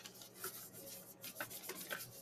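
Hands pressing and rubbing folded paper flat against a tabletop: a faint, irregular rustle with small crackles as the glued paper squares are pressed together.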